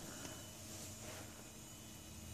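Faint room tone with a steady low hum and no distinct sounds.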